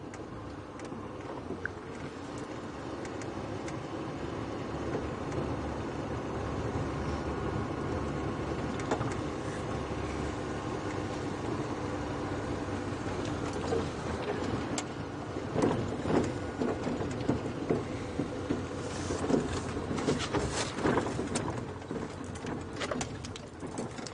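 Open game-drive vehicle driving along a rough dirt track: steady engine and tyre noise that builds over the first several seconds, with sharp knocks and rattles from bumps in the track through the second half.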